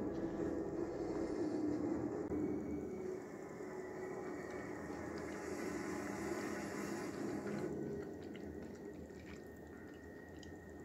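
Film soundtrack played through a TV: a steady vehicle rumble with rain, quieter in the last two seconds.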